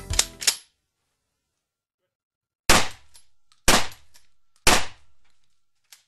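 Three sharp bangs, evenly spaced about a second apart, each with a short ringing tail, after a music track ends with two final hits.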